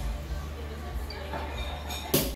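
Restaurant bar room ambience: a steady low rumble with indistinct voices in the background.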